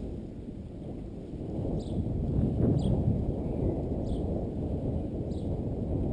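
Wind rumbling on the microphone of a camera moving along a street, swelling louder about two seconds in. Short high chirps repeat about once a second over the rumble.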